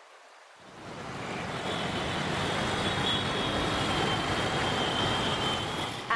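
Busy city road traffic: a steady rushing mix of engines and tyres that swells up about a second in and then holds, with a faint thin high tone over it.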